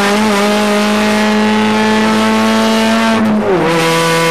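Saturn SC race car's four-cylinder engine heard from inside the cockpit, running hard at high revs with its pitch slowly climbing, then dropping quickly about three and a half seconds in with a shift up a gear.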